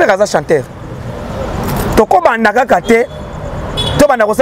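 A car passing close by on the street, its road noise swelling to a peak about two seconds in, heard between and under bursts of a man's talk.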